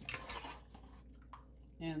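Metal spoon stirring vegetables in broth in an enamel pot, with soft sloshing and dripping of liquid, loudest in the first half second and then faint.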